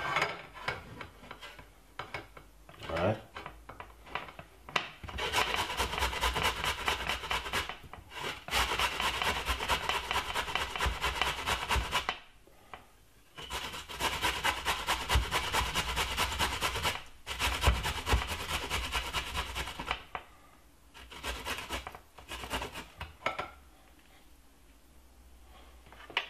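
Fresh ginger root rubbed up and down a stainless steel box grater: fast, even rasping strokes in long runs broken by two short pauses, with a few looser strokes at the start and near the end.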